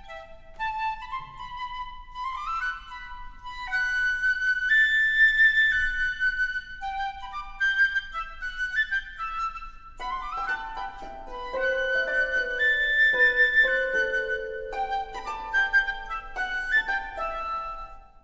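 Flute playing the catch's tune as a lively instrumental passage of quick stepping notes. A second, lower held line joins about ten seconds in.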